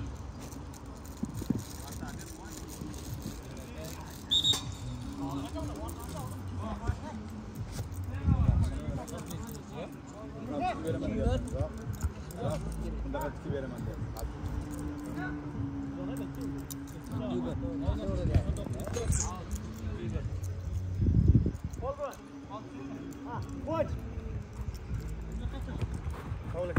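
Players' shouts and calls during a small-sided football match on artificial turf, with scattered sharp knocks of the ball being kicked. Two louder low rumbles come about 8 and 21 seconds in.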